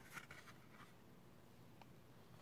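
Near silence with the faint rustle of a cardboard board-book page being turned, a short scrape just after the start and a tiny click near the end.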